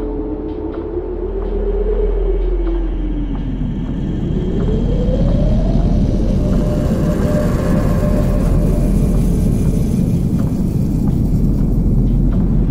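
Instrumental part of a sped-up nightcore edit of an electronic track, with no vocals. A heavy, rumbling synth bass plays under a synth tone that slides up, down and up again over the first six seconds, then holds steady.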